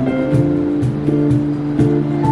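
Live street band playing an instrumental passage without vocals: sustained keyboard and guitar notes over a moving bass line, with a cajon keeping a steady beat.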